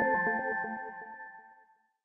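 Electronic logo jingle ending: held chime-like tones over a regular low pulse, dying away about one and a half seconds in.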